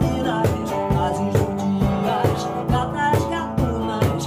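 A woman singing in Portuguese over a strummed semi-hollow electric guitar. A cajón, struck with a foot pedal, keeps a steady beat about twice a second.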